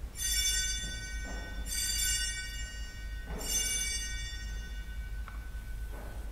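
Altar bell rung three times at the elevation of the host during the consecration: three bright, high rings about a second and a half apart, each left to fade. A light knock near the end.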